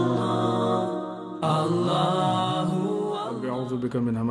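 Intro music: a slow chanted vocal with long held notes, dipping briefly and starting a new phrase about a second and a half in.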